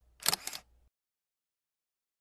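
Camera shutter sound effect: two quick clicks close together, about a quarter second in.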